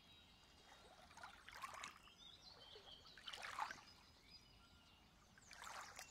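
Near silence with faint lake water lapping against shoreline rocks, coming in a few soft swells.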